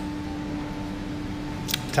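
A steady low hum holding one pitch, with a faint higher overtone, over low handling noise from a handheld camera; it stops near the end with a couple of sharp clicks.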